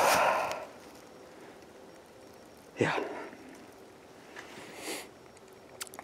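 A man breathing hard: a heavy breath out trailing off at the start, a short breathy vocal sound about three seconds in, and a sniff near the end.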